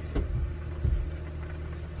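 A wooden table panel being lifted and handled, giving two low thumps, one just after the start and one about a second in, over a steady low hum.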